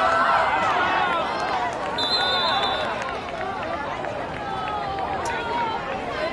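Football crowd in the stands, many voices talking and shouting over one another, with a short trilled referee's whistle about two seconds in, blowing the play dead after the tackle.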